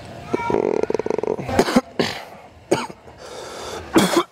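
A man who is feeling ill gives a rasping groan and then coughs several times in short, sharp bursts.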